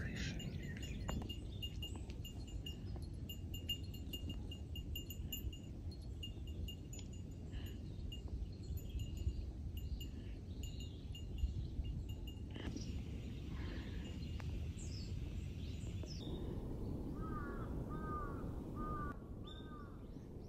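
Small hiker's bell tinkling in a steady rhythm, about twice a second, as its wearer walks up the trail. A few short repeated bird calls come in near the end.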